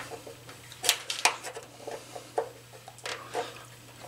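Flat-head screwdriver prying and scraping at the plastic cover over a water heater's anode rod, giving scattered clicks and scrapes, with a faint steady low hum underneath.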